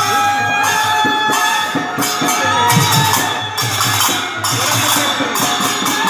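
Harinam sankirtan: group devotional chanting accompanied by jingling hand cymbals and drum strokes in a steady rhythm. The cymbal strokes come faster near the end.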